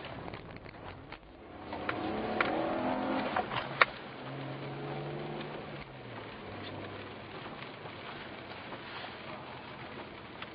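BMW 330ci's straight-six engine heard from inside the cabin, its revs rising about two seconds in, then running steadier and lower. Scattered sharp clicks and taps sound over it, the loudest about four seconds in.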